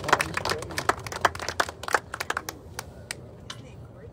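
A small outdoor crowd clapping after an unveiling, the claps thinning out and dying away near the end.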